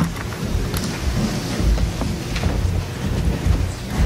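A group of people walking and shuffling about a room with a wooden floor: an uneven low rumble of footsteps and movement with a few scattered knocks, and no one speaking.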